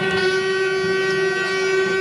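A long, steady, loud horn blast over low crowd noise in a basketball hall.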